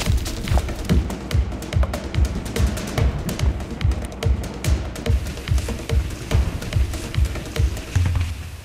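Background music with a steady electronic beat, about two beats a second.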